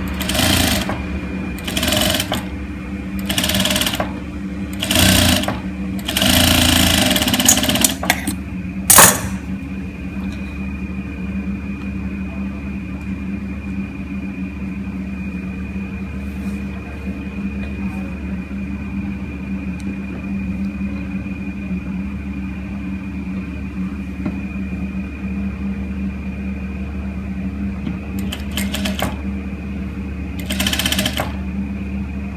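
Industrial flat-bed sewing machine stitching through cotton fabric in several short runs over the first eight seconds. A sharp click comes about nine seconds in, and the machine then hums steadily until two more short stitching runs near the end.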